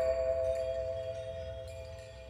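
Opening of a hip-hop beat: a held chord of a few steady tones that slowly fades, over a low bass rumble.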